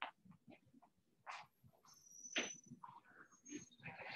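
Faint scattered clicks and rustles of room handling noise, with two brief high-pitched squeaks about two and three seconds in.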